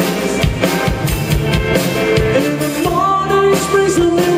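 Rock band playing live: electric guitars, bass guitar and a drum kit with regular drum hits, and a singer's voice. A held guitar note comes in about three seconds in.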